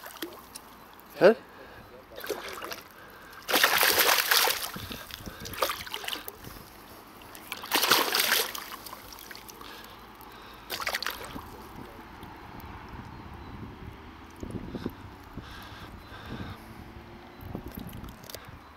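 Hooked catfish thrashing at the water's surface as it is pulled in on a set line, with two big splashes about four and eight seconds in and smaller ones later.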